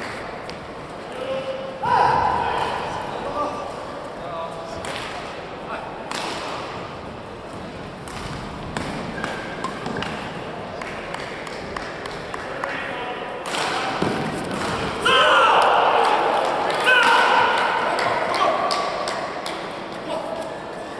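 Badminton rally: sharp racket strikes on the shuttlecock at irregular intervals. Loud voices come in about two seconds in and again from about fifteen seconds in.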